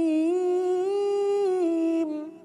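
A reciter's voice holding one long, slowly wavering note in melodic Quranic recitation, a drawn-out vowel as tajweed requires. The pitch rises slightly about a second in and drops back near the end before the note fades.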